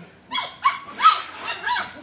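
Four-week-old standard schnauzer puppies yipping and barking, about five short high calls in two seconds.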